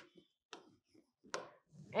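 A few faint, short ticks and scratches of a felt-tip marker on a white board as a word is written, the loudest a little past the middle.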